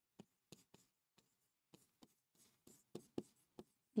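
Faint, irregular taps and light scratches of a stylus on a touchscreen board as handwritten chemical formulas are written, with about a dozen distinct ticks and a louder pair near the end.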